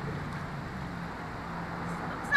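Steady outdoor background noise: a low hum under an even hiss, with no distinct splashes or knocks.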